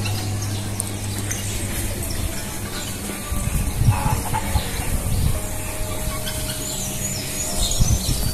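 Farmyard chickens clucking, over a steady low hum.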